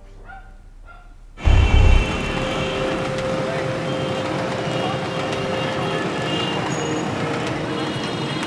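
City street traffic, mostly motorbikes and scooters, cutting in suddenly about a second and a half in with a loud low rumble, then a steady dense traffic noise of engines and tyres. Before it, a brief faint voice.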